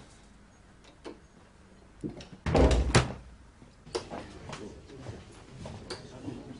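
A door being pushed shut, with a deep thud and a sharp latch click about two and a half seconds in, followed by a few lighter knocks.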